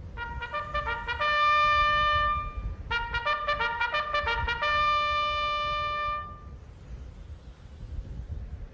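Military bugle call on a brass horn: two phrases of quick notes on the bugle's few natural notes, each settling on a long held high note. It stops about six and a half seconds in, over a low background rumble.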